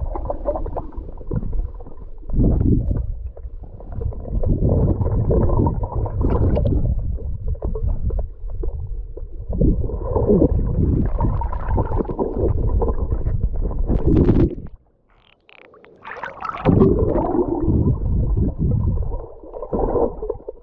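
Muffled underwater sound of water rushing and gurgling past a submerged camera, mostly low-pitched and coming in uneven surges as the swimmer moves. About fifteen seconds in it drops almost to quiet for a couple of seconds, then picks up again.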